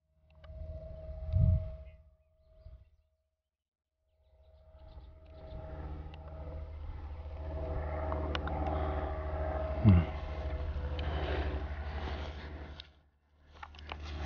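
Outdoor field noise of someone walking through tall grass toward a landed model plane: wind rumbling on the microphone, grass swishing and light footfalls, over a steady low hum. A short spoken "hmm" about ten seconds in.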